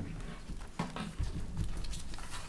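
Soft knocks and shuffling from a person getting up out of a chair and walking across the room, with a brief murmured word about a second in.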